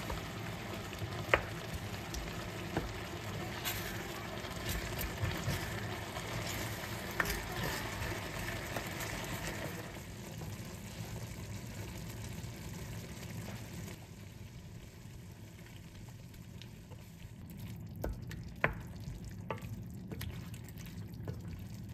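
Mala xiang guo sizzling in an enamelled pan while a wooden spoon stirs it, with a few sharp knocks of the spoon against the pan. The sizzle turns softer about halfway through.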